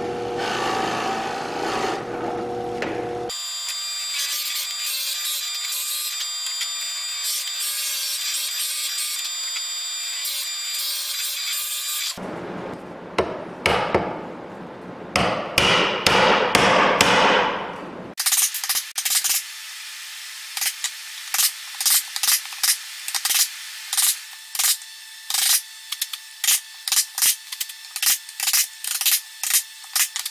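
A drill press boring into a pine board near the start. Later a chisel pares the wood in a run of scraping strokes, then a mallet strikes the chisel in a long series of sharp blows, roughly two a second, chopping a square mortise out of the drilled hole.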